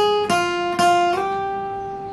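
Acoustic guitar playing a single-note line on the B string: a high note dies away, a lower note is plucked twice, then about a second in it slides up two frets and is left ringing.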